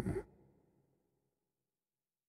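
The end of a spoken word, cut off about a quarter second in, then dead silence between two sentences of narration.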